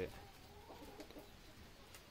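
Quiet background ambience: faint, indistinct sounds with a couple of soft clicks, and no clear single source.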